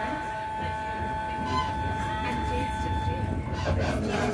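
Passenger train running, heard from inside the carriage: a low rumble under a steady whine of several held tones.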